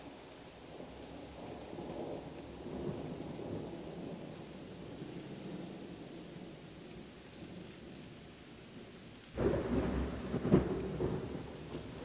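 Steady rain with rumbling thunder that swells and fades, then a much louder thunderclap about nine seconds in that rolls on to the end.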